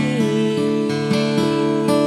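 Strummed acoustic guitar with a woman's voice holding one long sung note.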